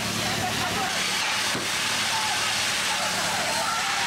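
Water cannon firing a high-pressure jet of water: a steady rushing hiss over a low engine hum, with people shouting through it.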